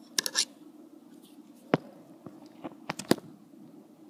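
Small sharp clicks of a loom hook and rubber bands against the plastic pegs of a Rainbow Loom: a quick cluster near the start, a single click about halfway and a close pair about three seconds in, over a faint steady hum.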